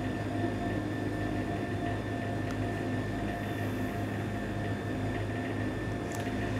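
Steady low mechanical hum with faint steady tones above it, unchanging throughout, and one faint click about halfway through. The hand sprinkling cheese makes no plain sound of its own.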